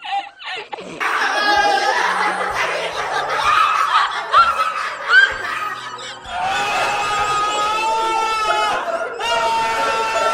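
Laughter, then about a second in background music with a steady bass line starts and carries on under people laughing and calling out.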